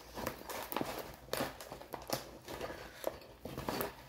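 A large diamond painting canvas being handled and rolled by hand on a tabletop: irregular crinkles, rustles and small clicks of the stiff canvas, several a second.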